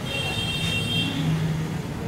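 Background road-traffic noise, a steady low rumble, with a high steady tone lasting about a second at the start.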